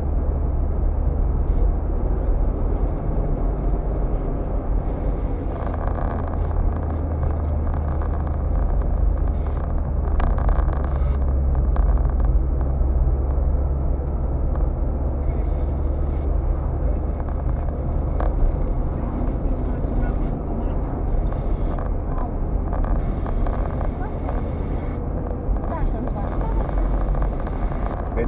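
Car cabin noise while driving at speed: a steady low engine and tyre rumble from the road.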